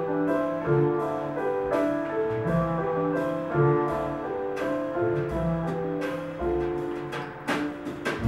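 Live jazz piano trio playing: grand piano carrying a melody of quick chords and notes over walking upright double bass, with light drum-kit and cymbal strokes and a stronger hit near the end.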